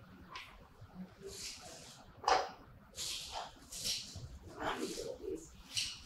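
Rustling and light clatter of art supplies being handled and moved about on a table: a string of short scrapes and rustles of paper and packaging, with the loudest knock a little over two seconds in.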